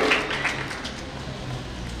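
Low background noise from a gathered crowd, with a few faint scattered claps, dying away.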